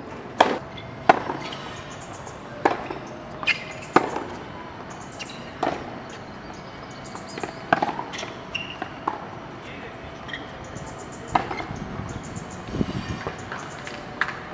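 Tennis ball struck by rackets and bouncing on a hard court during a serve and rally: a string of sharp pops, about one every second or so.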